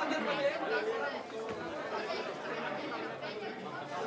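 Several people talking at once, an overlapping chatter of voices in a crowded room with no single clear speaker.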